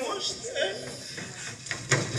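Actors talking on a stage in a hall, the voices heard from the audience's distance, with a couple of light knocks near the end.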